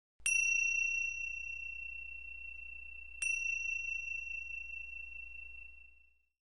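A high-pitched bell struck twice, about three seconds apart, each strike ringing on and slowly fading, over a faint low hum.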